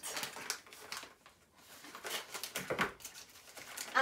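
Scissors snipping and plastic packaging crinkling as a new bottle cap is cut free of its wrapping: an irregular run of small clicks and rustles, with a short lull around the middle.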